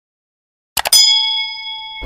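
Subscribe-button sound effect: a quick cluster of mouse clicks, then a single bell ding that rings on with a few clear tones and slowly fades.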